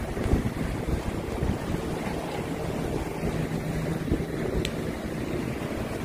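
Wind buffeting a handheld phone's microphone: a low, uneven noise with a faint steady hum beneath it, and a single short tick late on.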